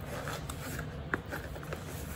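Handling noise of a fabric zippered pencil case and a sketchbook: soft rustling with a few light clicks.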